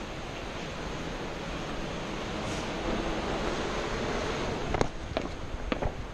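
Steady rush of wind on the microphone mixed with surf from the sea below. A few sharp knocks come close together near the end.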